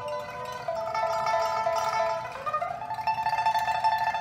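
Solo pipa, the Chinese four-stringed lute, playing a melody of plucked and held notes, with one note sliding upward about two and a half seconds in.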